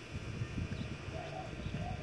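A bird cooing: a few short, soft notes.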